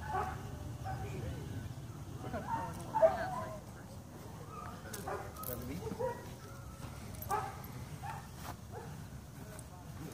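Twelve-week-old German Shepherd puppy giving short yips and barks while biting and tugging on a rag, with the loudest call about three seconds in.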